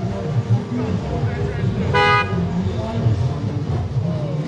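A car horn gives one short toot about halfway through, over the chatter of a crowd of voices.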